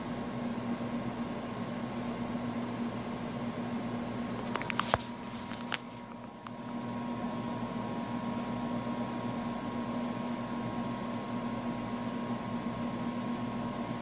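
Steady electrical hum and hiss with a low steady tone. A few sharp clicks come about five seconds in, and the noise dips briefly just after.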